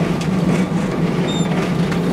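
School bus engine and drivetrain running steadily with a low hum, heard from inside the converted bus's cabin as it rolls slowly forward. A short high squeak comes about one and a half seconds in.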